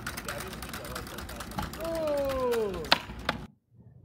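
Minotaur direct-drive legged robot running on asphalt, heard from its video clip: rapid clicks of its feet and motors, with a smooth falling whine about two seconds in. The sound cuts off abruptly about half a second before the end.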